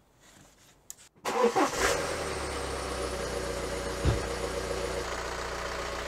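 Diesel car engine with solenoid injectors idling steadily, cutting in abruptly just over a second in after a faint click. A single low thump about four seconds in.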